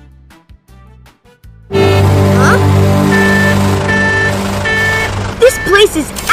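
Soft background music, then about two seconds in a loud animated-cartoon soundtrack cuts in: a steady vehicle engine drone under music, with short repeated high tones. Short rising-and-falling sounds come near the end.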